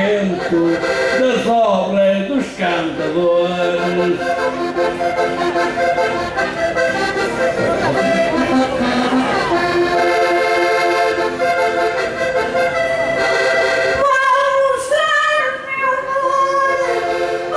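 Concertina playing an instrumental interlude between sung verses of a desgarrada, with sustained chords and melody. A sung line trails off at the start, and a woman starts singing over the concertina near the end.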